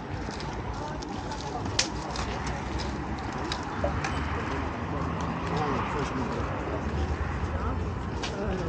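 Flea-market ambience: indistinct voices of people nearby, with a few sharp clicks and clinks of goods being handled, the loudest about two seconds in.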